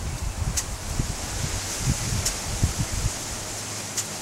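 A plastic bag held over a model steam engine's exhaust rustling and crinkling as the engine's exhaust air fills it. Under it is an irregular low rumble, and two sharp clicks come about a second and a half apart.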